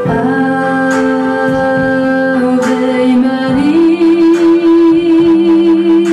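A woman singing a slow song into a microphone over piano accompaniment; about halfway through she rises to a long held note with a slight vibrato.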